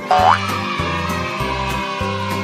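A cartoon sound effect: a quick upward-sliding tone just after the start, trailing off into a slowly falling note, over cheerful background music with a steady bass line.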